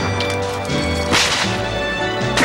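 A single gunshot crack about a second in, sharp and ringing briefly, over sustained film score music.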